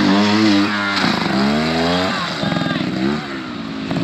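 Trials motorcycle engine revving under load as the bike climbs out of a stream up a muddy bank. The revs dip and climb twice, then drop back lower near the end.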